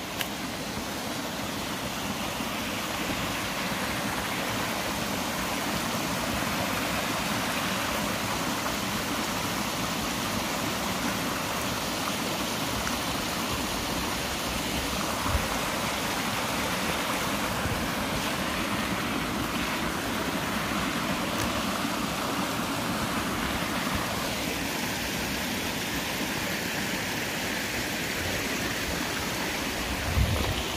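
Mountain stream rushing over rock slabs in small cascades: a steady, even rush of water.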